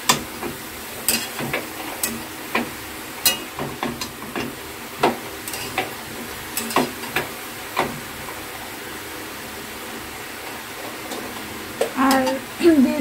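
Cabbage and potato pieces sizzling in a steel kadai while a steel spatula stirs them, scraping and clicking against the pan at irregular intervals. The clicks thin out in the last few seconds.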